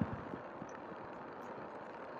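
Faint, steady car engine and cabin hum heard from inside the car while it idles, stopped for another car to pass.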